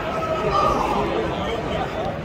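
Indistinct chatter of several voices talking close by, over general crowd noise in a large hall.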